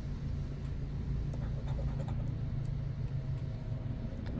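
A steady low background hum, like a motor running, with a few faint light scratches of a coin on a scratch-off ticket.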